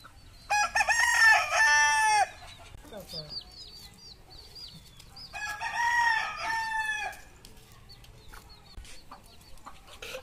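Two rooster crows: a loud one about half a second in that lasts under two seconds, and a second, slightly quieter one around the middle.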